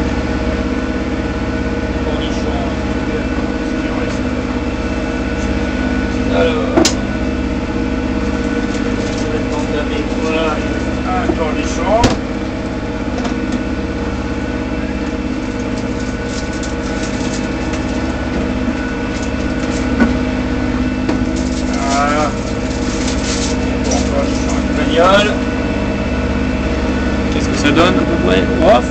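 Inboard diesel engine of a Bavaria 30 Cruiser sailboat running steadily under way, a constant drone heard inside the cabin, with a few brief knocks from work at the galley counter.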